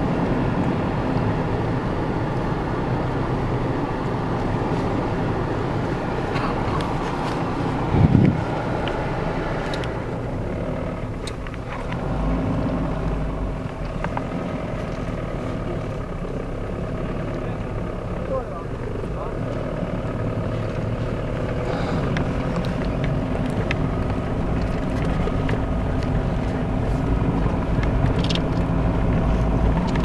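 A vehicle's engine running steadily at low speed, heard from inside the cabin, with the voices of people around it; one brief loud knock about eight seconds in.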